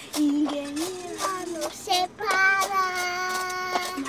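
A young girl singing, holding one long note through the second half.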